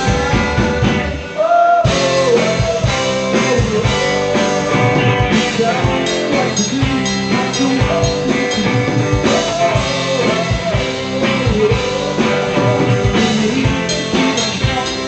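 Live rock band playing a song: sung lead vocal over electric guitars, bass and drum kit. The band drops out briefly about a second and a half in, then comes back in together.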